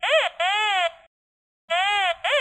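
Nokta Invenio Pro metal detector's audio target signals as the search coil is swept over buried metal targets (8 mm rebar and a coin): wavering tones that swoop up and down in pitch. A brief one at the start, a longer one just after, and another near the end, with silence between.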